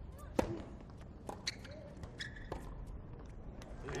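Tennis ball struck hard with a racket on a serve about half a second in, with a short grunt, then two more racket hits as the point is played out, with a few short high squeaks between them.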